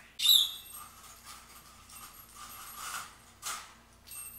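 Bird toy of wooden sticks and beads being unhooked and pulled out of a wire cage, knocking and scraping against the wire mesh with a light metallic ring. A sharp loud sound comes at the very start and is the loudest moment, and there are two more knocks near the end.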